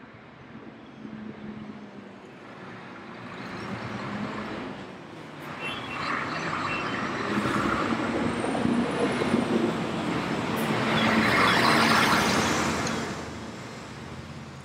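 Diesel engine of a Mercedes-Benz concrete mixer truck driving past in street traffic. It grows louder over several seconds, is loudest as it passes, then fades near the end.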